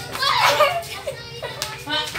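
Children's excited voices shouting during play, one high voice rising shortly after the start, with a couple of sharp knocks near the end.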